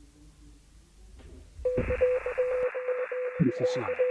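A recorded radio-show bumper cuts in about halfway through. It is a band of static-like radio noise with a steady tone, and a voice starts over it near the end.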